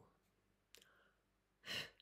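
Near silence, then near the end a woman blows out one short puff of breath, as in blowing a kiss; a fainter breath comes about a second earlier.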